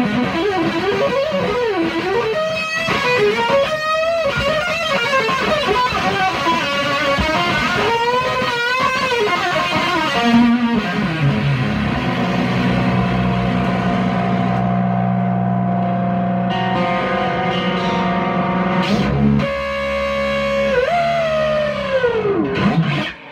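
Solo Stratocaster-style electric guitar with a distorted tone. It plays fast lead lines with wide string bends and vibrato for about ten seconds, then bends down into a long sustained low note that rings for several seconds, with a falling pitch dive near the end.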